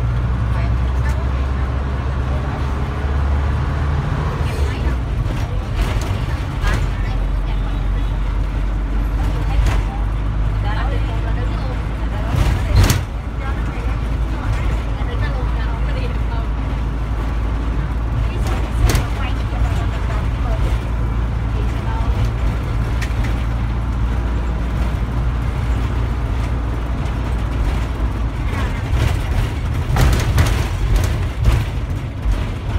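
A city bus's engine and cabin giving a steady low rumble as it drives through traffic, with a few sharp knocks or rattles, the loudest a little before halfway and another some seconds later.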